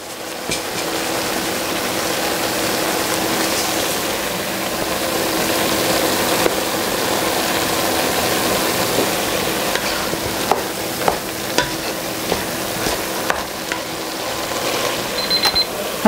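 Ground Italian sausage with onions and peppers sizzling steadily in a cast-iron Dutch oven, with a wooden spoon stirring and scraping through it. A few light knocks against the pot come in the second half.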